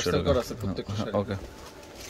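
A man's voice speaking briefly for about the first second and a half, then only faint background noise.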